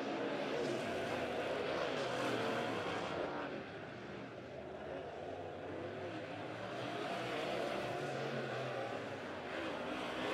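Dirt-track modified race cars' V8 engines running around the oval. The sound drops somewhat a few seconds in and comes back up.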